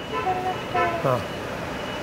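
A woman's voice, drawn out and hesitant: held vowel sounds like "uh" in the first second, ending in a falling glide.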